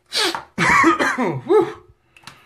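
A man coughing and clearing his throat: one short cough, then a longer, throaty bout lasting over a second.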